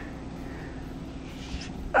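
Faint steady outdoor background hum with a single soft low thump about one and a half seconds in.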